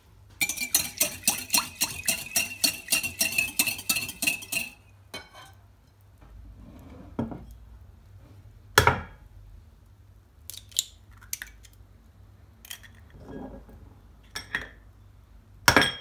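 Metal wire whisk beating a liquid in a glass bowl: quick, rapid clinking of metal on glass for about four seconds. After that come a few separate knocks and taps, with a sharp one near the end.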